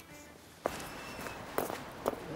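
Footsteps on a street: a few separate steps about a second apart, over steady outdoor background noise.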